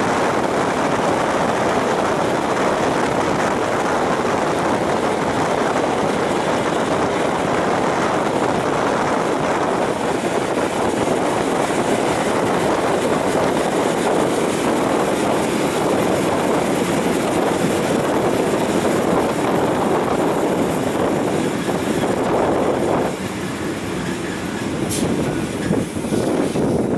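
EN57 electric multiple unit running at speed, heard from on board: a loud, steady rush of running noise from the wheels and the passing air, dipping for a moment near the end.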